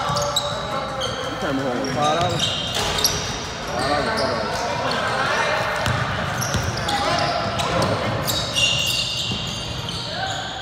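Basketball game on a hardwood gym court: many short, high-pitched sneaker squeaks as players cut and stop, a few ball bounces, and players and spectators shouting, all echoing in the hall.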